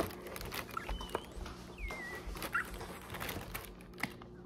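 Quiet handling of a cardboard shoebox and its tissue paper, with light clicks and rustles, and a few faint high-pitched squeaks that slide in pitch, one falling about two seconds in.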